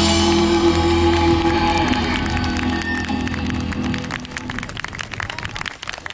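A live rock band's last chord, electric guitars, bass and cymbals, ringing out and slowly fading. Scattered audience clapping comes in about two seconds in.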